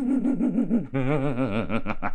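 A man's voice holding a long, wavering vocal sound, then about a second in breaking into a quick run of short laugh-like pulses.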